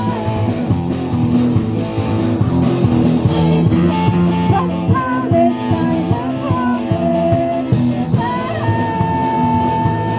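Live rock band playing: electric guitar, bass guitar and drum kit with a woman singing. Near the end a high note is held for over a second.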